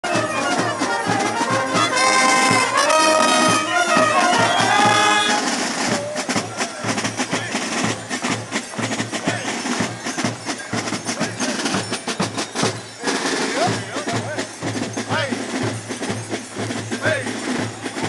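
Carnival brass band of trumpets, saxophones and a sousaphone playing a Gilles dance tune, with drums. The brass melody is loud and clear at first, then drops back about five seconds in, leaving the drumbeats and crowd voices more to the fore.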